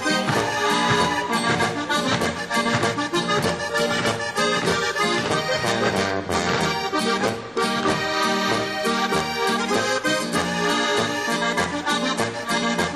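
Alpine folk band playing a Boarischer, a Bavarian couple-dance tune, with a steady, even beat.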